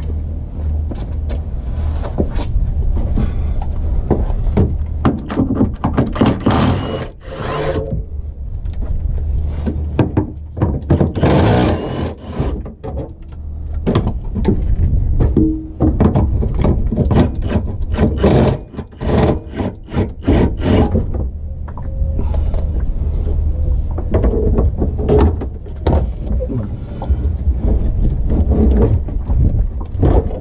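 Knocks, clanks and scrapes of hands and tools working under a car as the fuel tank is unstrapped and the plastic tank is lowered, over a steady low rumble.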